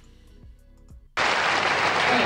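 Faint background music, then about a second in a studio audience breaks suddenly into loud applause and cheering.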